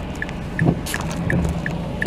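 Inside a car with the engine running: a steady low rumble and hum, with a light ticking about two and a half times a second. About a second in, a handheld camera is bumped and rustles as it is moved.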